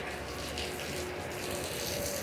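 Steady hiss of rain falling on wet pavement, with a low steady hum underneath.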